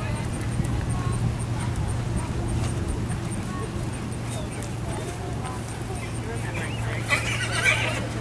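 A horse whinnying, a warbling call about a second long near the end, over a steady low hum and faint distant voices.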